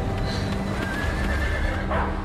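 A horse whinnying, with hoofbeats.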